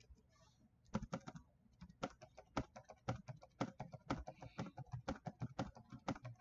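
Typing on a computer keyboard: rapid, irregular key clicks that start about a second in and go on steadily.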